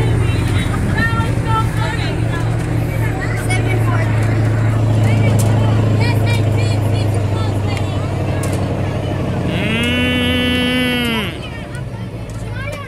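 A motor vehicle's engine running with a steady hum. Near the end, one of the cattle gives one long moo that rises and then falls, lasting nearly two seconds.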